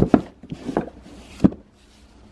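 An old hardcover book being pulled out from between tightly packed books on a wooden bookshelf: a few knocks and scrapes of board against board as it slides free.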